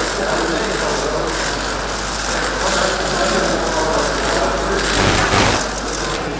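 Murmur of a crowded press room, people shuffling and moving about, with a steady mechanical clicking running through it.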